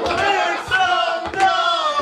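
Several voices yelling loudly in drawn-out, wordless cries.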